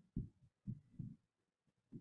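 Almost silent pause with about four faint, short low thumps spread across it: footsteps on a stage, picked up by a handheld microphone.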